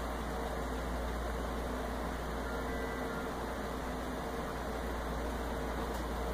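Steady hiss with a low hum underneath, unchanging throughout, like a fan or other appliance running in the room; no distinct events.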